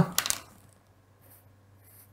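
A few quick clicks as a felt-tip pen is handled, then faint strokes of the pen on paper.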